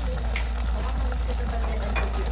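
Mussels in tomato and oyster sauce boiling in a pot, a steady bubbling with small pops and sizzles, over a constant low hum.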